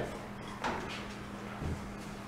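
Faint handling sounds from a Phillips screwdriver working the screws of an interior door handle: a short scrape a little after the start and a soft knock near the end.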